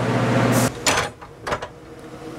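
Steady machinery hum with a rising hiss that cuts off suddenly under a second in, followed by a short scrape and two quick knocks.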